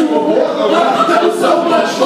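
Several voices singing in harmony, a cappella style, with notes held and moving together.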